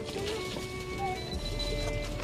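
Background music with held, steady tones and no speech.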